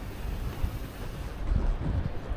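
Wind buffeting the microphone as a low, uneven rumble that swells near the end, over a haze of city street traffic noise.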